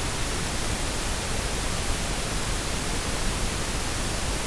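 A steady, even hiss like static, with no distinct sounds standing out in it.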